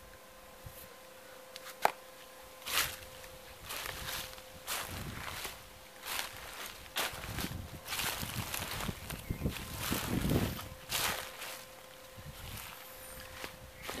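Footsteps on dry grass and soil: a run of irregular crunching steps, with a sharp click about two seconds in and a faint steady hum underneath.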